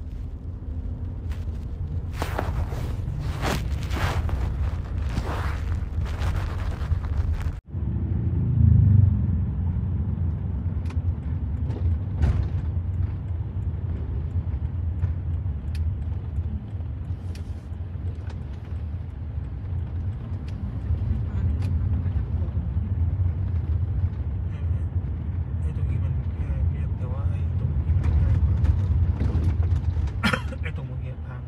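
Steady low road and engine rumble inside the cabin of a moving van. The rumble breaks off for an instant about seven and a half seconds in, then runs on.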